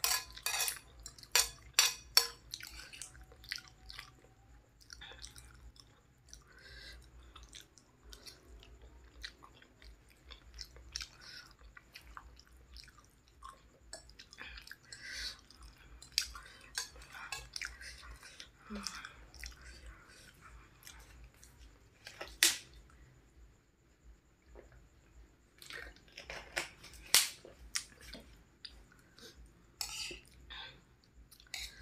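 A person chewing instant noodles, with a metal fork and spoon clinking and scraping on a ceramic plate. There is a quick run of sharp clinks at the start, one loud clink about two-thirds of the way through, and more clinks near the end.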